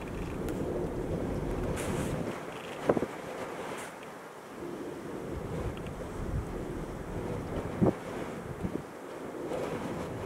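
Strong wind rushing and buffeting the microphone as a steady noise, with a couple of faint knocks.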